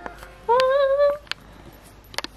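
A person humming one short note that slides up and then holds for under a second, starting about half a second in. A couple of light clicks come before and after it.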